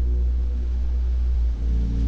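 Ambient sleep music with binaural-beat tones: a deep steady drone under held tones, with a change of chord about one and a half seconds in.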